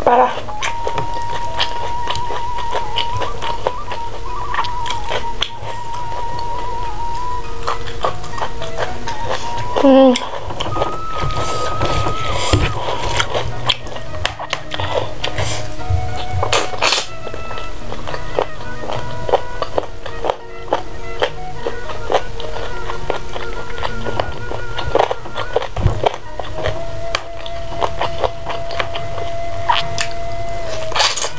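Background music made of long held notes, under close-miked eating sounds: chewing and many short mouth clicks and smacks as pieces of chicken are bitten and chewed.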